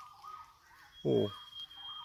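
A bird calling in forest: a thin, wavering whistle that rises and falls around one pitch. A higher, steady thin tone joins it about a second in.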